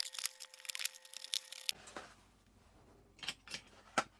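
Hot Wheels plastic blister package being cut open: a quick run of sharp crackling clicks for the first couple of seconds, then a few scattered clicks of the plastic and card.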